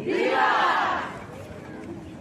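A crowd shouting "¡Viva!" together in answer to a call: many voices in one loud cry lasting about a second, then dying away to a low murmur.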